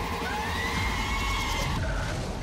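Horror-trailer soundtrack: a dense, loud mix of score and sound effects with a high wailing tone rising and arching over it, cut off abruptly near the end into a fading tail.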